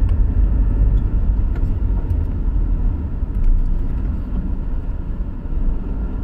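Steady low rumble of a car driving on a rough, dusty unpaved road, heard from inside the cabin, with a few faint clicks of rattles.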